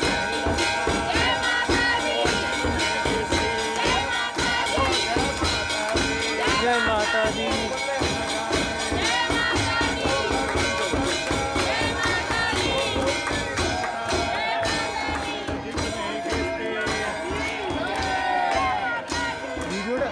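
Temple aarti music: fast, steady percussion with sustained ringing tones, over the voices of a large crowd.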